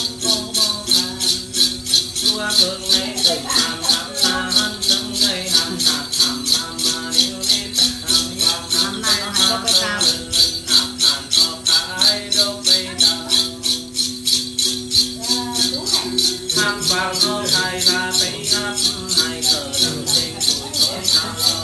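A xóc nhạc, a hand-held bundle of small metal jingles, shaken in a steady rhythm of a few strokes a second to keep time in Tày then ritual music. Singing and a plucked đàn tính lute go with it.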